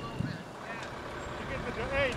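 Indistinct voices of people talking, heard over a steady rush of outdoor air noise.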